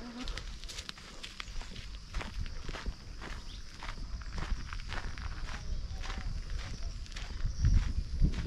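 Footsteps walking on a dirt road, about two steps a second, over a steady high-pitched drone, with a low rumble building near the end.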